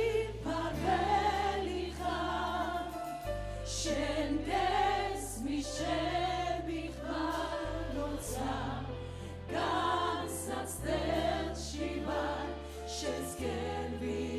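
Choir of mostly women singing a Christian worship song through microphones over held bass notes that change every two seconds or so.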